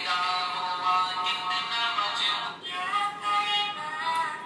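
A sung devotional track, a naat, playing from the built-in MP3 player of a Dany Ahsan-ul-Kalam smart Quran pen. It comes through the pen's small speaker, so it sounds thin and lacks bass.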